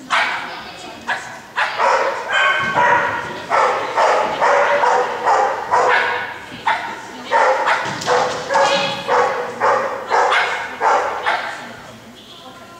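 A dog barking over and over in a steady run of sharp, high barks, about two a second.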